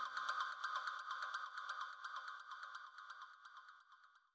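Background electronic music, a steady high tone with a quick, even ticking rhythm, fading out to near silence by the end.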